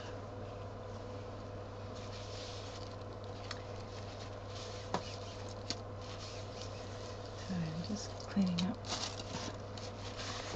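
Quiet work sounds: a few faint light clicks and a brief rustling hiss over a steady low hum, with short murmured voice sounds near the end.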